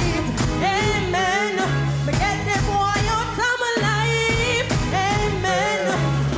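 Live dancehall band music with a woman singing a melody into a microphone, her held notes wavering, over a repeating bass line.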